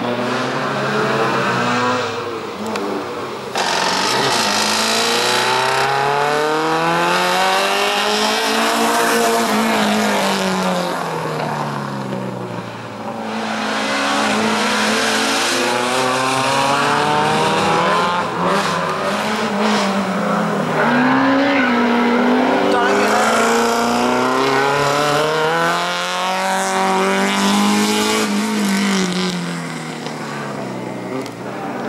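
Race car engine working hard through a cone slalom, its note climbing under acceleration and falling away again every few seconds as the car speeds up and slows for each gate.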